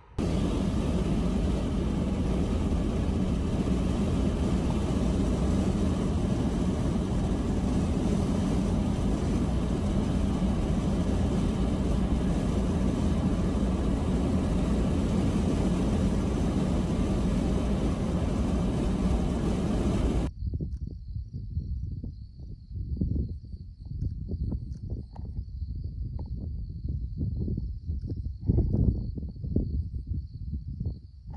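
Steady road and wind noise of a car driving along a highway, heard from inside the car. About twenty seconds in it cuts to uneven gusts of wind on the microphone over a steady, high chirring of crickets.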